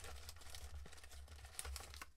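Faint crinkling and rustling of Topps sticker packets being handled and picked out of a display box, over a low steady hum.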